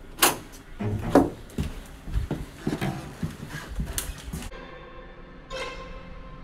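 A run of irregular knocks and thumps, then eerie music with steady held tones comes in about four and a half seconds in.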